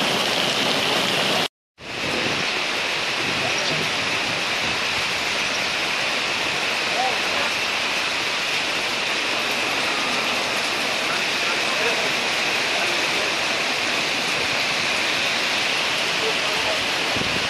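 Heavy downpour with hail mixed in: a steady, dense hiss of rain. The sound drops out completely for a moment about a second and a half in, then resumes unchanged.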